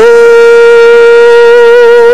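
A man's voice holding one long, steady sung note with no wavering in pitch.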